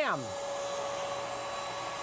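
Paint Zoom electric paint sprayer running: a steady motor hum with an even hiss of spraying paint. The motor is a 650-watt pump in a shoulder power pack.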